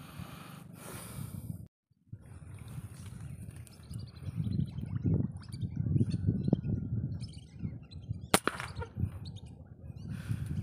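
Hard breathing, then after a cut, rustling and handling noise with faint chirps while a rifle is aimed through grass. A single sharp crack near the end, a rifle shot.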